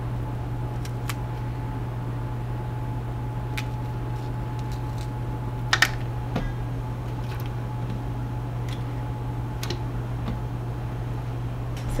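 Light handling sounds over a steady low hum and a faint steady tone: a few faint clicks and taps as whole cloves are pushed into an onion and the onion pieces are set into a metal stockpot of raw chicken, the clearest tap about six seconds in.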